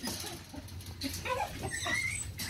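Young Phu Quoc Ridgeback puppies whimpering and yipping, several short high calls clustered in the second half.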